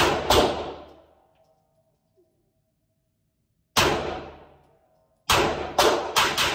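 CZ 75 Tactical Sport pistol in .40 S&W firing five shots: a quick pair at the start, a single shot just before four seconds in, and another quick pair near the end. Each shot rings off in the room's echo.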